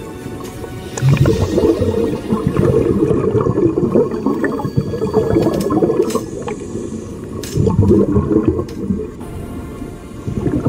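Muffled underwater bubbling and gurgling in two long surges, the first starting about a second in and lasting several seconds, the second near the end.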